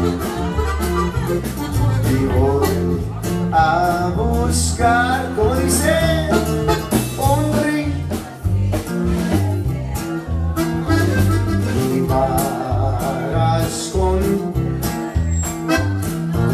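A live Tejano band playing: strummed acoustic guitar over a strong bass line and a steady drum beat, with a wavering lead melody on top.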